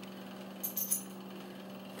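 A brief cluster of light metallic clicks, a little over half a second in, from a stainless steel 1911 pistol being handled and turned over in the hands, over a steady low hum.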